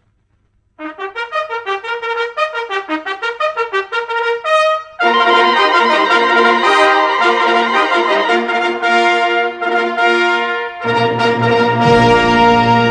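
Wind band played from an LP record, starting a piece after about a second of silence: quick detached notes at first, then from about five seconds the full band with brass holding loud chords, low brass joining near the end.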